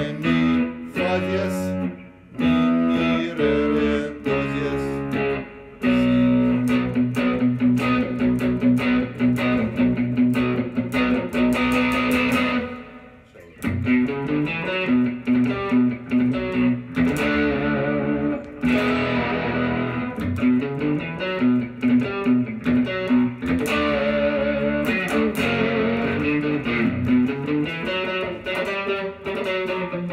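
Electric guitar, a Stratocaster played on its neck pickup through a Line 6 Helix processor, playing a run of single notes and chord figures. The playing breaks off briefly about thirteen seconds in, then resumes.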